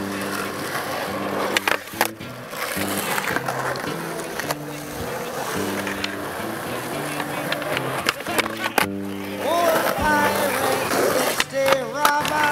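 Skateboard wheels rolling on concrete, with several sharp clacks of the board popping and landing, over background music with a stepping bass line. Near the end a voice with sliding pitch comes in.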